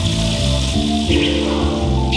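Electronic instrumental music: held bass and chord notes that change about every half second, over a steady hiss in the high range.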